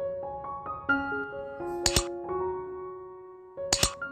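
Gentle piano background music playing a slow stepping melody, cut by two sharp double clicks, one about two seconds in and one just before the end: mouse-click sound effects of a subscribe-button animation.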